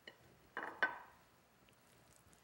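Faint knocks and a clink against a ceramic plate as hands pat a crab cake in flour. There are two close together about half a second in, the second ringing briefly.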